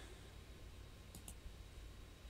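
Two faint computer mouse clicks close together about a second in, over quiet room hum.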